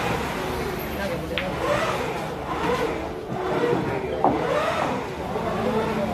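Men's voices chatting in the background, with a sharp click about four seconds in from pool balls striking each other, and a fainter click earlier.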